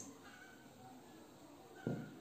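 Faint, brief squeaks of a marker writing on a whiteboard, with a short click near the end.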